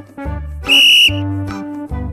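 A short, shrill whistle blast about 0.7 s in, over background children's music with a steady beat. The whistle is the signal to change to the next pose in the game.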